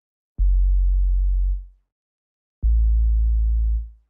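Two deep synthesized bass notes played back in FL Studio, one about half a second in and one just past the middle. Each starts with a sharp click, holds for about a second and then fades out, with silence between them.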